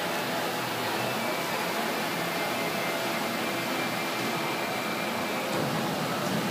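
Steady, even rushing noise of a large indoor arena's background, with a faint thin high tone that holds for a few seconds in the middle.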